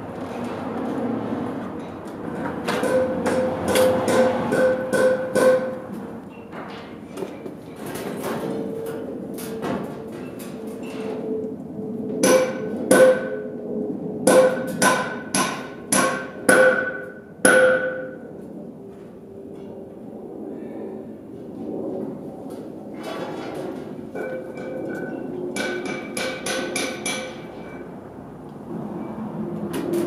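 Hammer blows on metal in three bursts of quick strikes, each strike ringing with a clear metallic tone.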